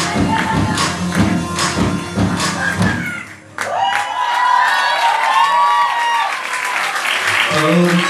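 Live rock band playing with hard drum hits, stopping suddenly about three seconds in. The audience then claps and cheers with shouts, and near the end the band sounds a new held chord.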